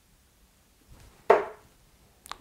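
A 23.5 g tungsten steel-tip dart striking a bristle dartboard: one sharp thud a little over a second in, dying away quickly.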